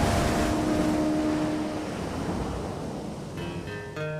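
Rushing noise of breaking surf fading steadily under a music soundtrack: a held chord dies away about halfway through, and a few soft plucked notes come in near the end.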